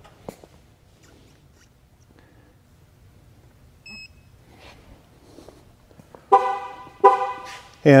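A short, high electronic beep about four seconds in from the T56000 TPMS tool as it triggers the left rear tire-pressure sensor. Near the end the 2008 GMC Yukon Denali's horn chirps twice in quick succession, signalling that the vehicle has accepted the last sensor and the stationary relearn is complete.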